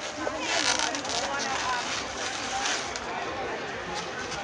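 Latex modelling balloon rubbing and squeaking as it is twisted into a balloon dog, over background crowd chatter.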